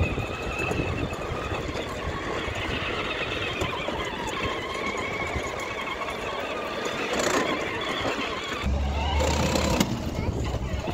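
Battery-powered toy ride-on jeep driving: its small electric drive motors whine with a wavering pitch while its hard plastic wheels rattle over paving stones. A low rumble comes in near the end.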